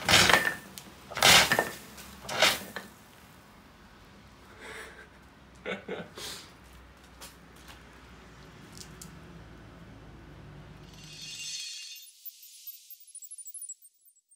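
Cartridge-operated ABC dry-powder fire extinguisher discharging in short hissing spurts: three loud spurts about a second apart in the first three seconds, then a few weaker puffs around five to six seconds in. The sound cuts off about eleven seconds in.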